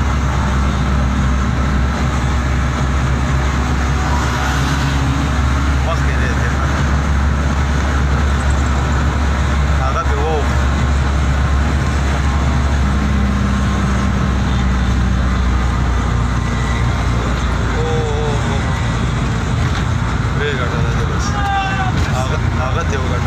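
Steady low engine drone and road noise from a vehicle travelling at speed on a highway, with a few brief wavering sounds, like voices, now and then.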